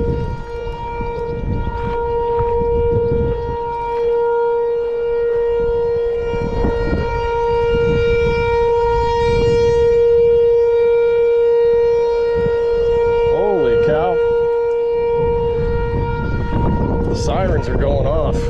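A steady whining tone with several overtones holds at one pitch throughout, over a low rumbling noise.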